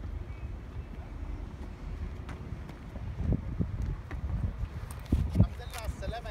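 Wind rumbling on the microphone, with a few dull thumps about three seconds in and a louder cluster near the end.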